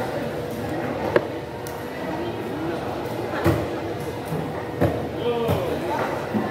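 Background chatter of voices, with four sharp knocks, the loudest about a second in, as a large golok knife strikes the wooden board while a tuna is cut up.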